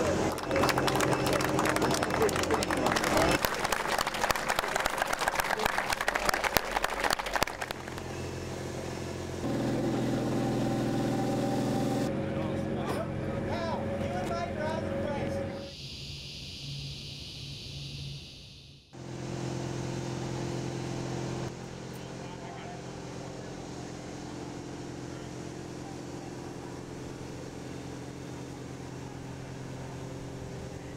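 Crowd voices and noise for the first several seconds, then the steady hum of the engines of the external tank's transporter and escort vehicles running at a slow roll, the sound changing at several cuts.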